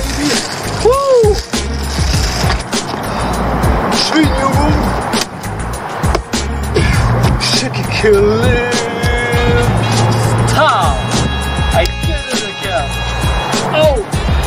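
Freeline skate wheels rolling on concrete, with sharp knocks and clatter as the skates strike the rail and ground. Background music plays throughout.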